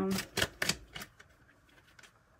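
Tarot cards being shuffled in the hands: three crisp card slaps or clicks about a third of a second apart, all in the first second.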